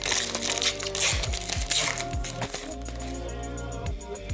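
Background music with a steady beat. Over it, for roughly the first two seconds, the foil wrapper of a hockey-card pack crinkles as it is opened.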